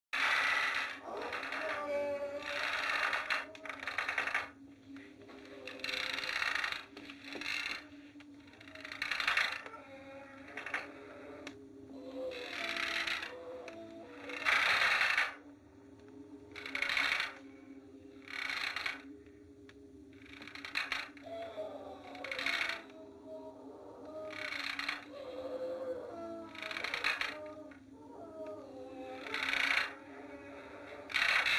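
Horror film soundtrack: low sustained eerie tones with wavering higher notes, and a short noisy swell that comes back about every two seconds.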